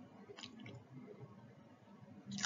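Near silence: faint room tone with a couple of soft clicks about half a second in.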